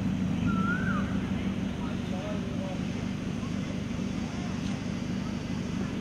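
A steady low rumble with voices in the background, and a short chirp that rises and falls about half a second in.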